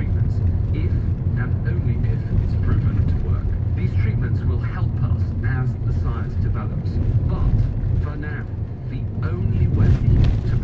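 Steady low rumble of a car's engine and tyres heard from inside the cabin while driving, with faint speech from the car radio over it.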